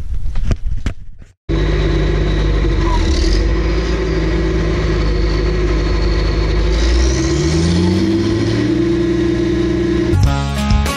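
Footsteps on snowy pavement for about the first second, then, after a brief cut, a tractor engine running steadily with a rising note in its pitch from about seven seconds in.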